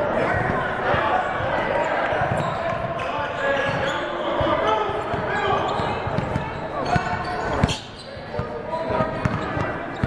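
A basketball bouncing on a hardwood gym floor, mixed with the voices of players and spectators calling out, in a large gym. One sharp knock stands out about three-quarters of the way through.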